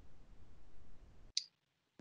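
Faint low background noise from an open video-call microphone, then one short, sharp click about a second and a half in, before the sound gates to silence.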